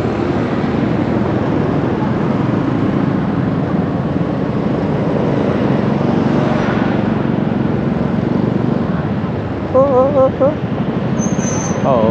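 Steady traffic noise heard from a moving motorbike in dense scooter traffic, with a continuous low engine hum. A short voice-like sound breaks in about ten seconds in, followed by a brief high thin tone.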